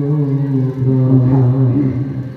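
A man singing a devotional chant through a microphone in long held notes that bend slightly in pitch.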